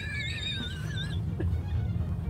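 A woman's high, wavering, wheezing laugh for about a second, then fading, over the steady low rumble of the car on the road.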